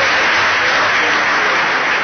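Crowd applauding, a steady, loud, even sound of many hands clapping.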